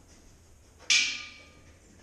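A single sharp knock of a hard object about a second in, ringing briefly as it fades.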